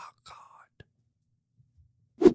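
Mostly near silence: a man's faint breathy exhale in the first half second, then a single soft click.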